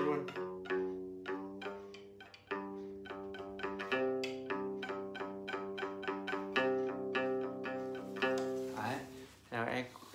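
Đàn nguyệt (Vietnamese two-string moon lute) plucked in a quick melodic run of single notes, with a brief break about two and a half seconds in.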